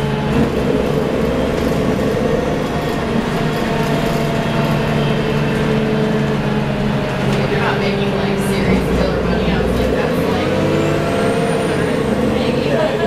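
Cabin sound of a 1990 Gillig Phantom transit bus under way: its Cummins L-10 diesel engine and Voith D863.3 automatic transmission droning steadily, the pitch of the drone shifting a few times as the bus changes speed.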